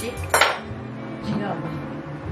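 Stainless steel cutlery clinking as a handful of spoons, forks and knives is handled and laid out on a table: one sharp clink about a third of a second in, then lighter clinks near a second and a half.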